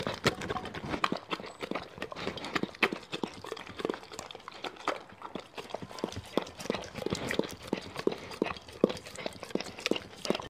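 A Doberman licking a plate clean close to the microphone: wet tongue laps, clicks and smacks, a few each second in an irregular run.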